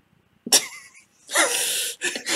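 A man breaking into laughter: a sharp burst of breath about half a second in, then a longer breathy exhale near the end.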